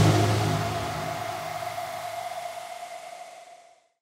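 The closing tail of an electronic drum-and-bass outro track: a held low bass note under a hiss, fading out steadily and gone just before the end.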